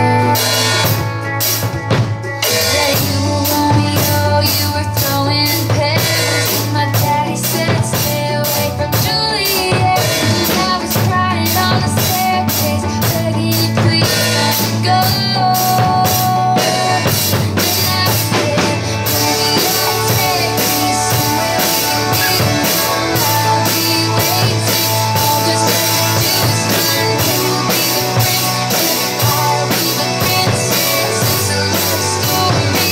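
Acoustic drum kit played live in a steady pop-rock beat of bass drum, snare and cymbals, over a recorded pop backing track. The cymbal work gets busier and brighter from about 19 seconds in.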